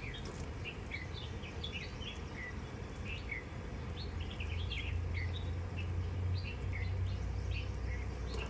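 Small birds chirping over and over in short, quick falling chirps, above a low steady rumble that grows louder about halfway through.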